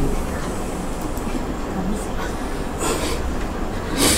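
Steady low room noise with a low rumble, faint murmured voices and a brief hiss near three seconds.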